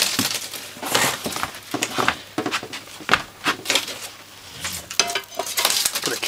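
Old solid copper house wire being twisted and ripped out of its cable sheath by hand: a run of irregular scrapes, crackles and clinks, loudest at the start.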